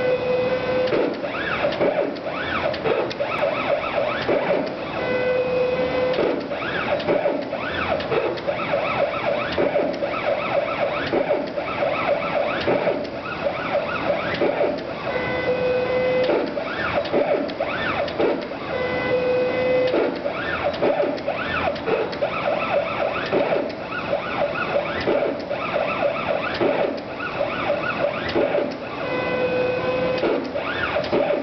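CNC gantry's drive motors whining as they move an airbrush in short strokes, the pitch rising and falling with each move several times a second. Now and then a steady tone is held for about a second.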